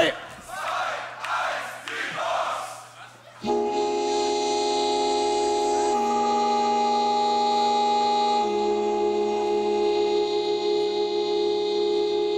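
Shouting and crowd cheering for about three seconds, then a sustained looped chord from a beatboxer's loop station starts suddenly and holds, changing chord twice.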